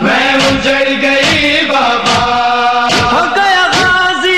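A noha, a Shia lamentation chant, sung by male voices holding long drawn-out notes, over a regular beat about once a second.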